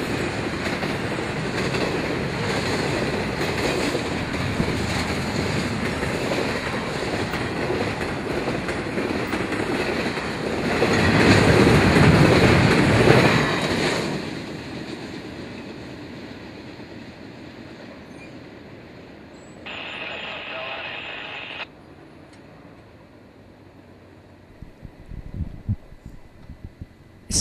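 Double-stack intermodal train's well cars rolling past on steel wheels and rail: a steady rumble that grows louder for a few seconds near the middle, then fades as the train moves away.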